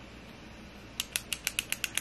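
Click-mechanism lip liner (Too Faced Lip Shaper plumping lip liner) clicked rapidly, about ten sharp clicks in a second starting about a second in, each click pushing the crayon tip out a little. Before the clicks there is only faint room tone.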